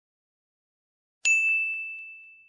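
A single bright chime struck about a second in, a sparkle sound effect on a title card, ringing on one high note and fading away over about a second and a half.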